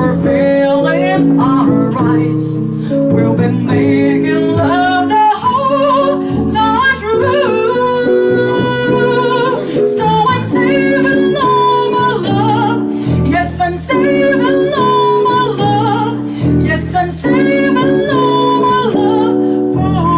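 Live jazz trio: a woman singing a ballad melody into a microphone, accompanied by plucked upright double bass and a hollow-body electric jazz guitar.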